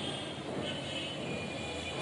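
Marker pen squeaking on a whiteboard in short strokes as words are written, over steady background noise.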